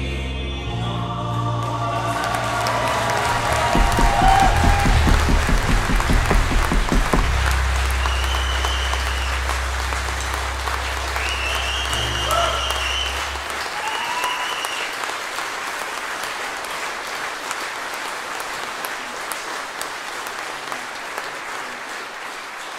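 A live band with drums, keyboard, electric guitar and singers ends a song on a held final chord, with quick drum beats building and a low bass note ringing on until just past halfway. Audience applause rises over it and carries on alone, slowly fading.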